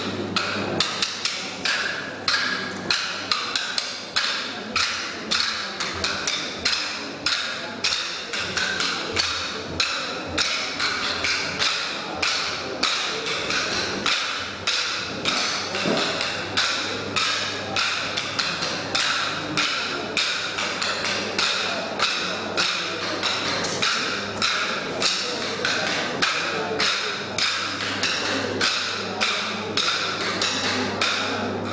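Wooden kolattam dance sticks struck together in a steady, even rhythm, about two sharp clacks a second, as a group of dancers keeps time.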